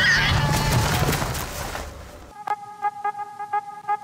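Outdoor wind noise with the tail of an animal's wavering call right at the start. About two seconds in it gives way to background music of short, evenly repeated notes.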